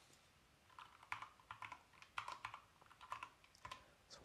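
About a dozen faint key clicks in quick, uneven runs, starting about a second in: keys being pressed, in keeping with a sum being entered on a calculator or keypad.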